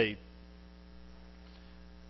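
A pause in a man's talk filled by a steady electrical mains hum, with the tail of his last word right at the start.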